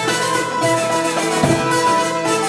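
Live folk instrumental on hurdy-gurdy, nyckelharpa and cittern over hand drums, with the hurdy-gurdy's steady low drone held under the tune. A deeper drum stroke stands out about one and a half seconds in.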